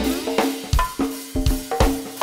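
Drum kit playing a go-go groove on its own: a steady beat of kick, snare and cymbal strokes, with no singing or bass over it.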